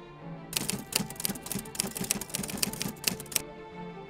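Typewriter key-clicking sound effect, a rapid irregular run of clicks starting about half a second in and stopping about three seconds later, over soft background music.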